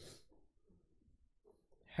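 A short, sharp breath close to the microphone at the very start, then faint room noise.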